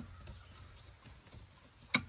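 Faint, steady, high-pitched insect trill in the background, broken by one sharp click near the end.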